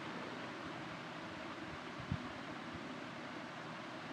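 Steady low hiss of background room and microphone noise, with one faint low thump about two seconds in.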